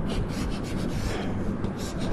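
Chalk scratching on a blackboard in short, uneven strokes as zigzag lines are drawn.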